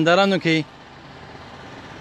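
A man speaking into a handheld microphone stops about half a second in, leaving a steady, even background hiss of outdoor ambience for the rest of the pause.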